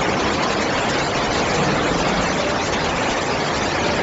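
Floodwater rushing along a subway platform: a loud, steady roar of churning water.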